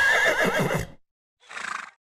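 A horse whinnying: one wavering call that dies away about a second in as the intro music stops. A short noisy burst follows about a second and a half in.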